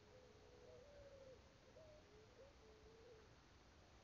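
Near silence, with a faint low hoot-like call that wavers and steps up and down in pitch for about three seconds, ending a little before the close.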